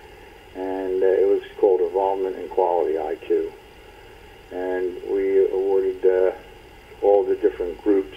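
Speech only: a man talking in phrases with short pauses.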